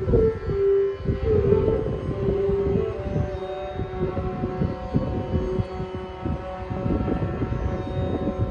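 Carnatic bamboo flute playing a melody with gliding, bending ornaments, over a steady drone, with a busy pattern of mridangam strokes underneath.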